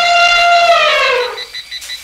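Elephant trumpeting: one loud, brassy call held on a steady pitch that then slides down and ends about one and a half seconds in.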